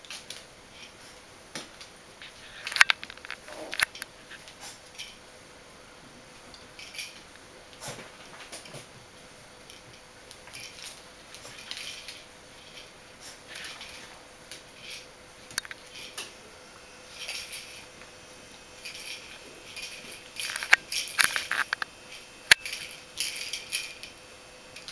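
Bichon Frisé puppies playing with toys on a towel over a wooden floor: irregular scuffles, rustles and clicks, busiest about three seconds in and again near the end.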